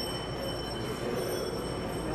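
Steady background room noise: a low hum with a few faint, steady high-pitched whining tones over it.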